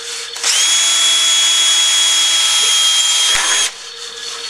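Makita cordless drill running at a steady high whine for about three seconds while drilling a pilot hole through a thin steel wall batten, then stopping suddenly near the end.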